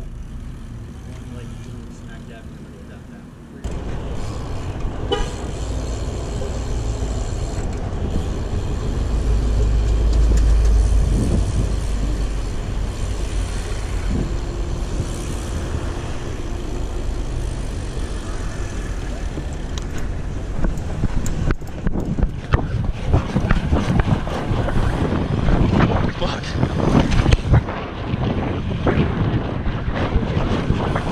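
Wind rumbling on a GoPro's microphone mounted on a BMX bike riding along a street with car traffic. It starts suddenly a few seconds in after a quieter stretch, and frequent knocks and rattles from the bike come in near the end.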